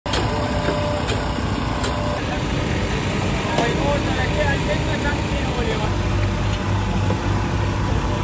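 Busy street ambience: a steady low hum of traffic and engines with indistinct voices in the background. A few sharp ticks come in the first two seconds.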